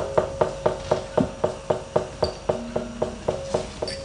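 Gamelan percussion struck in a fast, even rhythm of about five strokes a second, over ringing pitched notes.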